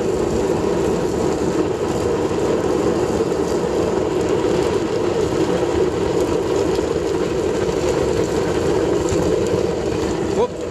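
Waste-oil burner built from a fire-extinguisher bottle, fed by a bouncy-castle blower, running with a steady, loud rushing hum of fan and flame. It is burning with a bit too much oil and running wet.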